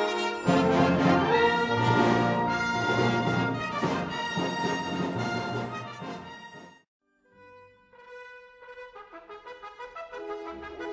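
Brass music: a full ensemble of brass instruments plays loudly, breaks off about seven seconds in, and a softer brass passage starts up after a brief pause.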